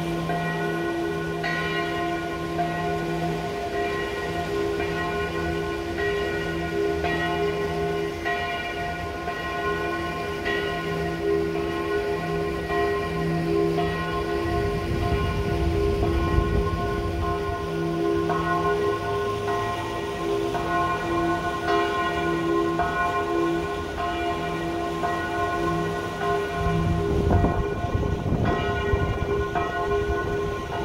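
Church bells pealing, several bells struck over and over with their tones hanging and overlapping. A low rumble swells under them about halfway through, as a train crosses the bridge, and again near the end.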